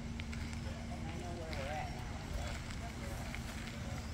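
Faint distant voices of people talking over a steady low rumble, with a thin steady hum that stops a little over a second in.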